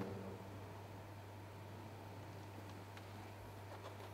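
Quiet room tone: a steady low hum under a faint hiss, with a few faint ticks.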